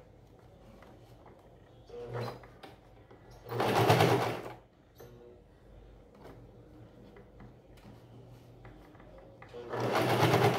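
Domestic sewing machine stitching fabric pieces onto a rug base in short runs: a brief run about two seconds in, a louder run of about a second near the middle, and another starting near the end, with faint clicks in between.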